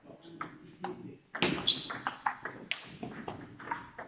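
Table tennis balls clicking off bats and the table during rallies, a string of short sharp knocks, the loudest about a second and a half in.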